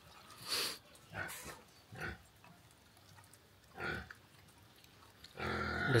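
A puppy eating rice from a metal pot, making four short bursts of chewing and snuffling noise a second or so apart, with quiet gaps between them.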